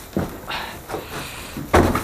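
Handling noises: a soft knock, some rustling, then a louder thump shortly before the end, as parts and packaging are moved about.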